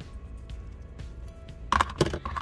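Scissors snipping through ribbon with a few faint clicks, over steady background music. A louder clatter near the end as the metal scissors are set down on the cutting mat.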